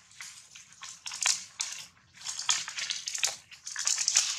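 Dry leaves and grass crunching and crackling in irregular bursts close to the microphone, with no calls.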